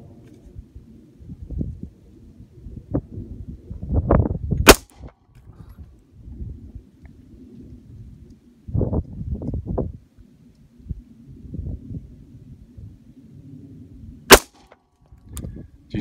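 Two single pistol shots from a Sig P320, about nine and a half seconds apart, each a sharp crack, with low rumbling noise in between.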